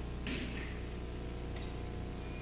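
Quiet room tone with a steady low hum. A short click with a brief rustle comes about a quarter second in, and a fainter click comes near the end.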